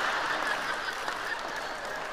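Large audience laughing and clapping after a punchline, the noise dying away steadily.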